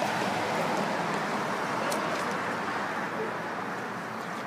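Road traffic on a multi-lane street: a steady wash of tyre and engine noise from passing cars that slowly eases off toward the end.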